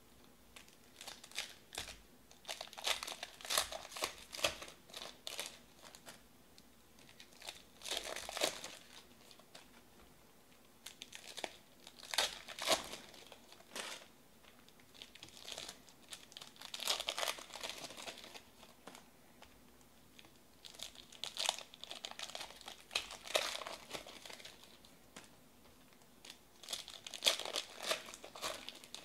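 Foil wrappers of 2019 Panini Select football card packs crinkling and trading cards being handled, in short bursts every few seconds with quiet gaps between.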